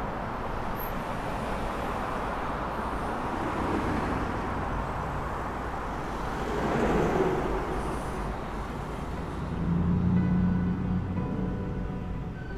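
A steady rumbling, hissing ambient wash, like distant traffic, that swells about seven seconds in. Low held musical tones come in near the end.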